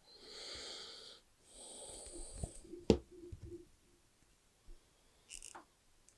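Two breathy hisses of about a second each, then one sharp click about three seconds in as pliers work on the cable's wires, followed by a few small ticks and a short hiss near the end.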